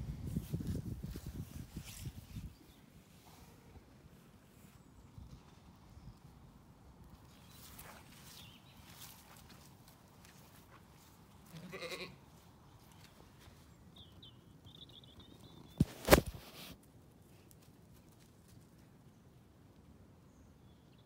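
A Zwartbles ewe bleats once, a short call midway through. Before it, wool rubs against the microphone as the ewe's head is scratched. A sharp knock about three-quarters of the way through is the loudest sound.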